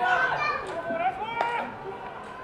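Several voices shouting and calling out at once, typical of players' calls during a baseball game, loudest at the start. A single sharp knock comes about one and a half seconds in.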